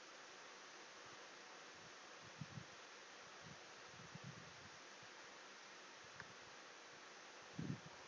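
Near silence: steady faint hiss of the recording's noise floor, with a few faint low thuds about two and a half, four and seven and a half seconds in.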